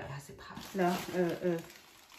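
Speech only: a voice saying a few short syllables near the middle, with no other clear sound.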